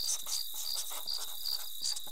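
Crickets chirping in an even rhythm, about three chirps a second, over a constant high-pitched tone.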